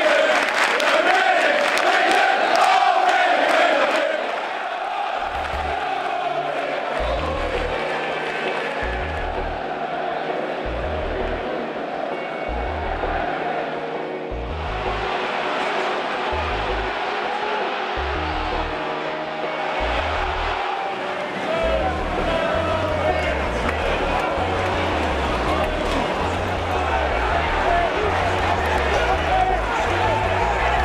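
Football crowd singing together for the first few seconds, then background music with a pulsing bass beat comes in over the crowd noise.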